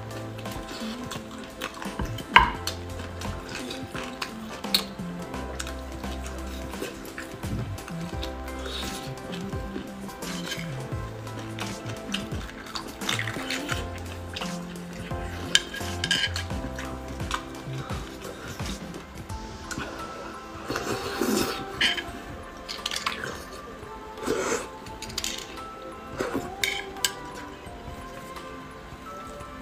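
Background music with a stepping bass line, over close-up eating sounds of marrow bones: sharp clicks and scrapes of a thin metal utensil against the bone, and short wet sucking bursts in the second half.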